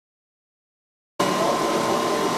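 Pool equipment-room machinery running steadily: a loud, even hum with several steady tones, cutting in suddenly about a second in after silence.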